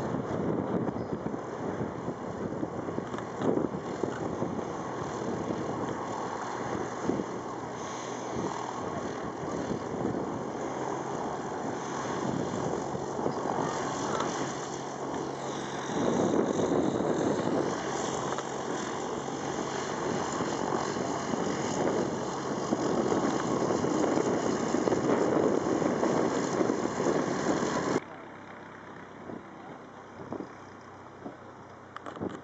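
Cessna Caravan single-engine turboprop landing and rolling out on grass, its engine a steady drone under a rough, noisy rush. The sound gets louder about halfway through and drops suddenly near the end.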